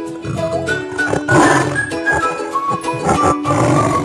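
A tiger roaring twice, about a second and a half in and again near the end, over children's background music.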